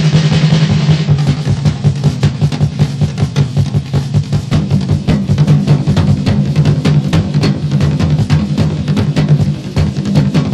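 Live rock band playing without vocals, the drum kit hit hard and busily with rapid fills over a sustained low, droning band sound.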